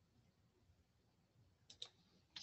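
Near silence: room tone, with two faint clicks in quick succession near the end.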